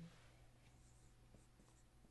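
Near silence, with a few faint dry ticks of a marker on a whiteboard in the second half, as letters are written.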